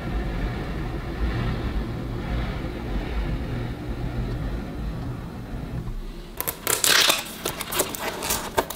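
A steady low rumble for about six seconds, then loud, rapid crackling of cellophane shrink-wrap as it is handled and peeled off a cardboard kit box.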